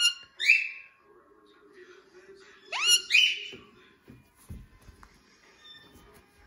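Indian ringneck parakeet giving two loud rising whistled calls, each sweeping sharply up and then holding a high note, about three seconds apart. A few soft thumps follow as the bird scuffles in the blanket.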